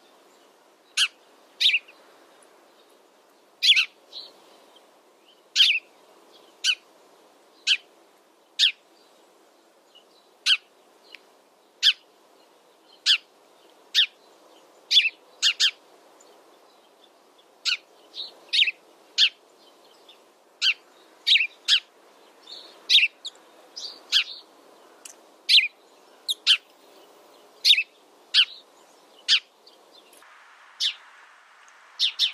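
House sparrow chirping: single short, sharp chirps, roughly one a second and irregularly spaced, over faint steady background noise.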